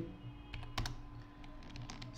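A few separate keystrokes on a computer keyboard, short sharp clicks over a faint steady hum.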